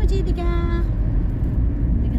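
Steady low rumble of a car's engine and road noise heard inside the cabin. Near the start, a voice holds one sung note for about half a second.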